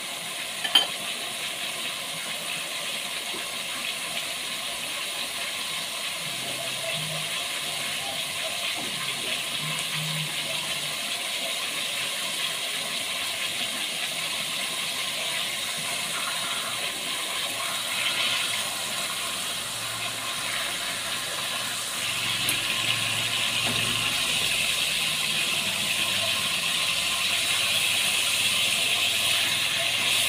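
Pork steaks sizzling in a pot of sauce with onions, a steady hiss that grows louder in the last third, with one sharp click about a second in.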